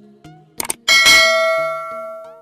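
Subscribe-animation sound effect: two quick clicks, then a bright bell ding that rings out and slowly fades.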